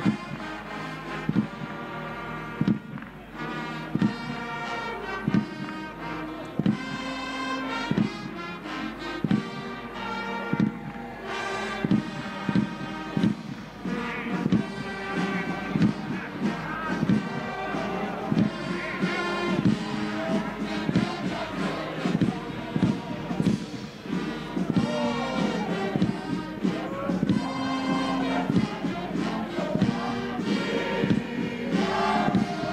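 Brass band playing a national anthem, held brass notes over a steady bass drum beat.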